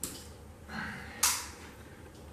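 A pinned paper portrait being taken down off a wall: a small click, then two short rustles of paper, the second sharper and louder, a little past a second in.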